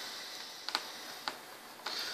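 A few light, sharp ticks, three or four spread over two seconds, from multimeter test probes being handled and set against a power supply circuit board, over faint room hiss.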